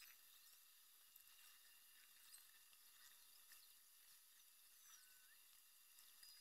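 Near silence: a faint high hiss with a few tiny scattered ticks.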